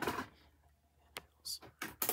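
Three short, sharp clicks in quick succession in the second half, from a DVD player being handled.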